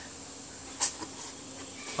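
Faint steady hiss with one short sharp click a little under a second in: handling noise, as the parcel or camera is moved.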